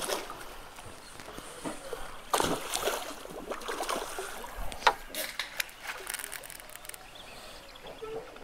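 A large hooked fish splashing at the water's surface below a deck as it is played on the line, in a few irregular bursts, the strongest about two and a half seconds in and another around five seconds, with a run of sharp clicks after that.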